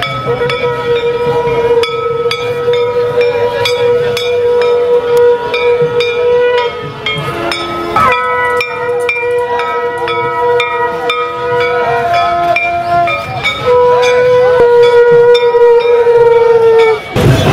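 Conch shells blown in long held notes, about three long blasts with short breaks around seven and thirteen seconds in, each tailing off slightly at its end. Under them, hand bells are rung rapidly, clanging.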